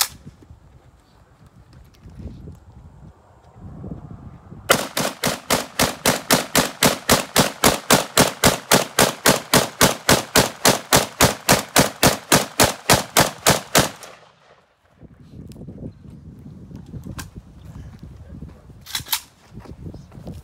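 AK-47 rifle firing 34 rounds in a fast, steady string of shots, about four a second, starting about five seconds in and stopping after roughly nine seconds.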